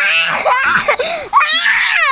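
A young child crying loudly in high-pitched wails, broken by a short catch of breath about a second and a half in.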